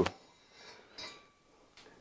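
Faint scraping and a light tick as a wad of copper mesh on a straight wire is pulled through a stainless steel condenser tube to scrub out built-up crud.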